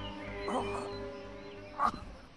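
Soft background music with held tones, fading down. It is broken by a short cry about half a second in and a louder, sharper one just before the end.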